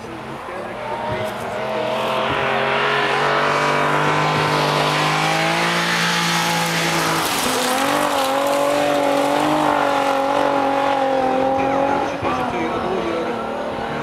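Volvo 164 rally car's straight-six engine driven hard on a gravel stage, getting louder as it comes closer. About seven seconds in the note dips briefly and climbs again as the car slides through the corner. It drops away near the end as the car goes off.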